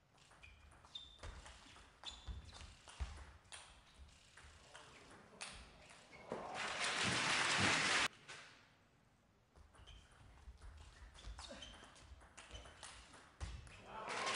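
Table tennis rally: the celluloid ball clicking off the bats and the table in quick irregular knocks. About six seconds in the point ends and the hall crowd applauds for two seconds, cut off abruptly; a second rally of ball clicks follows, ending in applause near the end.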